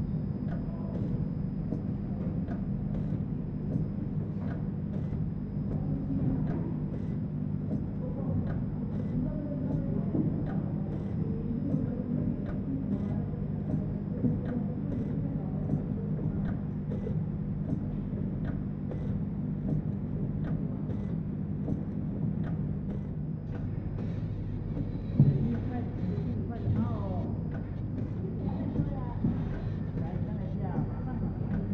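Automatic vertical bag packing machine running: a steady motor hum with light, regular clicking from its mechanism, and a single thump a few seconds before the end.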